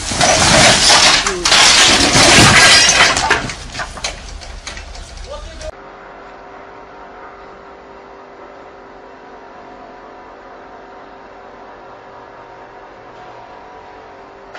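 A loud crash and clatter of things breaking, mixed with shouting voices, for about five seconds; then it cuts off suddenly to a low steady hum with a faint constant tone.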